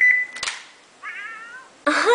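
A T-Mobile Sidekick's themed sounds: a steady high electronic beep that stops shortly after the start, a sharp click about half a second in as the phone's screen snaps round, then a short high-pitched cat-like call from the phone's small speaker, the sound a Hello Kitty theme plays when the phone is flipped open.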